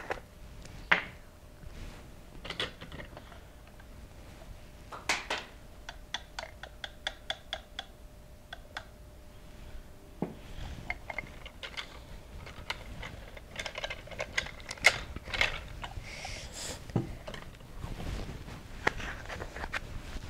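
Light clicks and taps of small plastic items being handled: red plastic measuring spoons and a food-colouring bottle with its cap. A quick run of ticks lasts about two seconds, some six seconds in.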